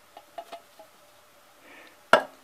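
Canned pinto beans and their liquid sliding out of the can into the pressure cooker's inner pot, giving a few soft, wet plops in the first second or so.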